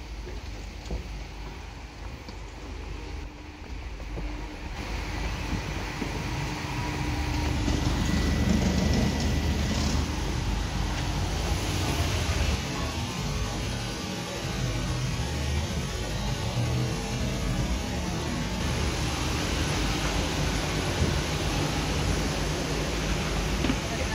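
Steady rushing noise of a Boeing 737-800 parked at the gate, heard from the jet bridge and its doorway, growing louder about six seconds in and staying loud.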